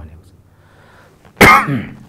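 A man coughs once, sharply, about one and a half seconds in, after a short pause in his speech.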